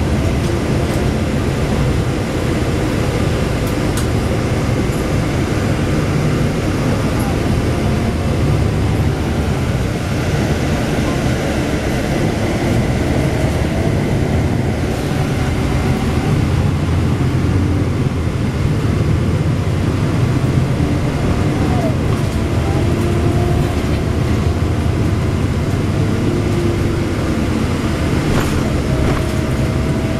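Cabin of a 2009 NABI 416.15 (40-SFW) diesel transit bus under way: steady engine drone with road and rattle noise, heard from a passenger seat.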